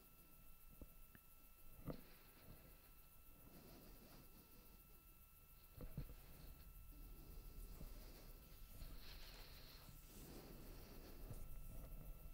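Near silence: faint low background rumble with a thin steady tone and a few soft clicks, the clearest about two and six seconds in.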